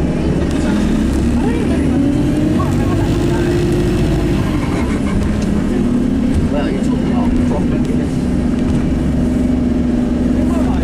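Bus engine and drivetrain running as heard inside the passenger cabin: a steady low rumble with a whine that climbs over the first few seconds, drops away about four to five seconds in, then holds steady.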